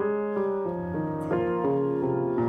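Solo grand piano playing a classical piece, with new notes and chords struck every half second or so.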